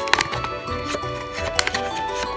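Background music playing, with a few light clicks from a small cardboard candy box being handled and opened.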